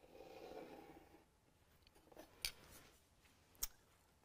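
Pencil drawn along a ruler across a canvas: one soft, scratchy stroke lasting about a second, followed by a few light clicks and taps.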